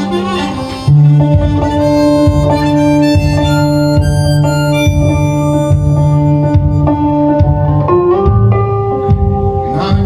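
Harmonica played live through a microphone, holding long notes and chords over a resonator guitar and a steady low bass note. It gets suddenly louder about a second in.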